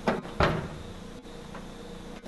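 A metal door lever handle and lock being worked by hand, giving two sharp rattling clicks close together about half a second apart near the start.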